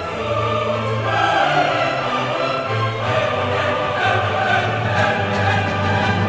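Mixed chorus singing sustained chords with a full orchestra in an Italian opera, the harmony shifting every second or so.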